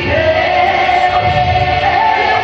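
Live gospel singing with several voices over amplified keyboard accompaniment. One long sung note is held and steps up in pitch near the end.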